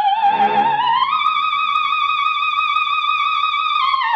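Operatic soprano singing, climbing about a second in to a high E-flat that she holds with a steady vibrato until just before the end.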